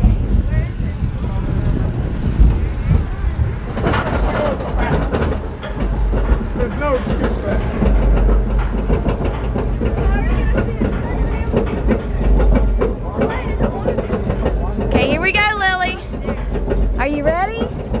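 Steady low rumble of a steel roller coaster train on its track, with riders' voices over it. A high, wavering voice stands out about three quarters of the way through.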